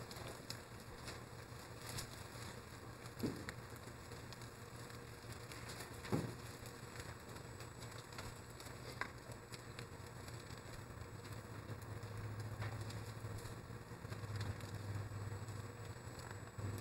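Faint rustling of thin Bible pages being turned, with a few soft taps, over a low steady hum that grows slightly louder near the end.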